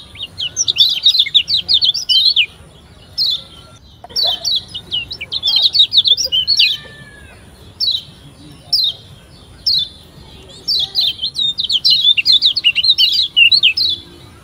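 Kecial kuning (Lombok yellow white-eye) singing in fast bursts of high, rapid chattering chirps, with single short chirps in the pauses between.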